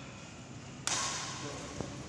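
Badminton rally: a racket strikes the shuttlecock with a single sharp crack near the end. About a second in, a sudden burst of hissing noise starts and slowly fades.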